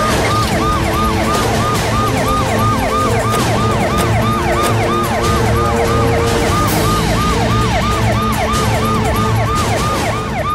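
Emergency vehicle siren in a fast yelp, its pitch rising and falling about three to four times a second without a break, over a steady music score.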